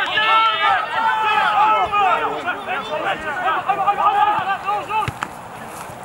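Several rugby players shouting and calling at once during play, their voices overlapping, then dying down about five seconds in, with a single sharp knock just before.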